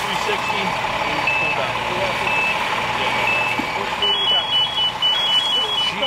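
Electronic warning beeps: single beeps about once a second, then from about four seconds in a faster beeping that alternates between two pitches, over the steady hum of idling fire apparatus engines and background voices.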